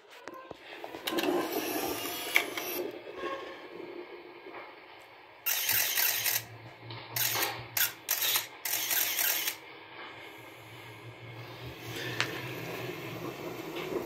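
Handling noise from a phone being moved around: rubbing and scraping on the microphone in several short bursts, thickest between about five and nine and a half seconds in.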